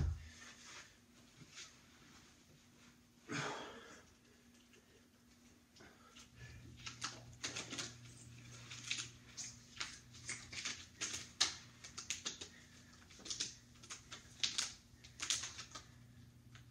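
Small irregular clicks and rustles of a loop resistance band being pulled up over the legs and rolling on itself, with a short louder rustle about three seconds in as he sits down on the carpet. A faint steady hum runs underneath.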